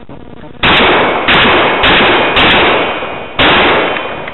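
Rifle fired five times in quick succession, very loud bangs about half a second apart with a longer pause before the last shot, each followed by a short ringing tail.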